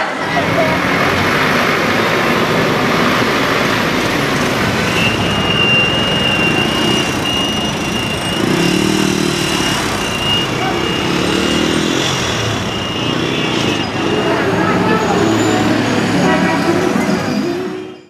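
Street traffic: a motor tricycle, cars and a bus driving past, with horn toots and voices. A thin, high, steady tone breaks on and off through the middle.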